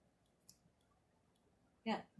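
Quiet room with one faint, short click about half a second in, then a woman saying "yeah" at the very end.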